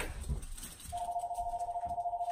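A telephone ringing: a steady, rapidly warbling electronic tone that starts about a second in.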